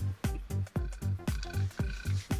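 Background music with a steady bass beat, about two beats a second, and short falling-pitch blips between the beats.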